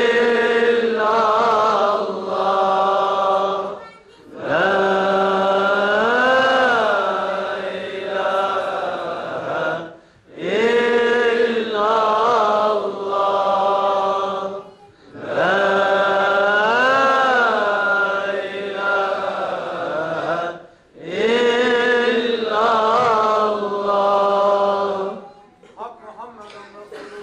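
Sufi devotional chanting: five long melodic phrases, each about five seconds, with short breaks between them and the pitch swelling up and back down in the middle of several.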